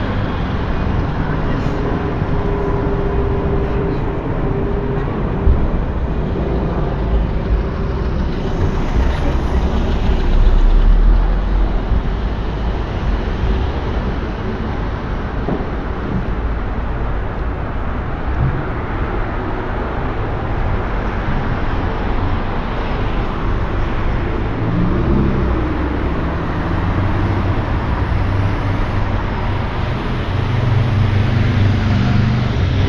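Road traffic on a city street: cars and other vehicles passing steadily, with a deep engine rumble swelling about ten seconds in.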